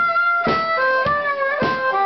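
Harmonica playing held chords and changing notes between sung lines, over a steady drum beat of roughly two thumps a second.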